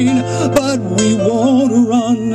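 A man singing with a wide, wavering vibrato into a microphone over instrumental backing; a held note ends just after the start and the melody moves on.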